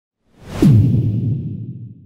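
Editing transition sound effect: a whoosh swells in and hits about half a second in, dropping into a low boom whose pitch falls and then fades away over about a second and a half.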